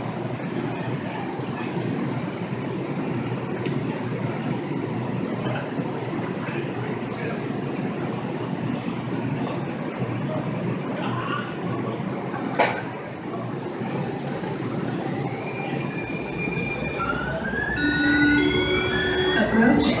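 Siemens S200 light rail train in an underground station: a steady rumble, with a sharp click about two-thirds of the way through. From about three-quarters of the way in, the train pulls out with an electric whine of several tones rising in pitch as it accelerates, growing louder near the end.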